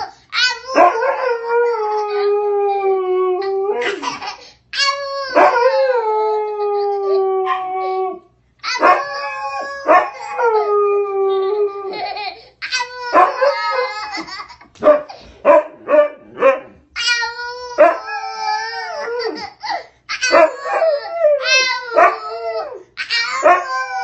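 Husky-type dog howling in long drawn-out calls, several of them about three seconds each, sagging slightly in pitch, while a toddler squeals and laughs along with it. The cries come in quicker, choppier bursts near the middle.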